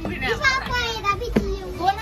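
Young children's high-pitched voices calling and chattering, over a steady low rumble, with one short knock a little past halfway.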